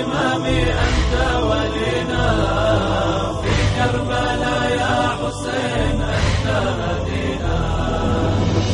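Arabic devotional chanting: voices holding a drawn-out, wavering melody over a steady low bass underneath.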